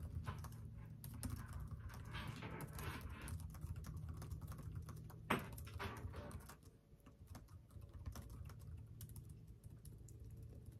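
Typing on a computer keyboard: a quick, steady run of key clicks, with one sharper, louder key strike about five seconds in, then lighter, sparser typing.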